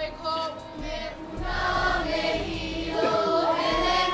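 A group of voices singing together like a choir. Near the end, crowd shouts and cheers start to rise over it.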